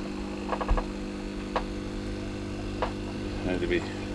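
Steady electrical hum made of several low fixed tones, from the fish room's running equipment, with a few faint short clicks over it.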